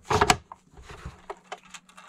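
Bamboo wrap dispenser being handled on a desk: a short wooden knock and clatter at the start, then a few faint taps as it is picked up.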